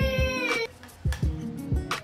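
Background music with a steady beat; in its first half-second there is one high, drawn-out pitched call.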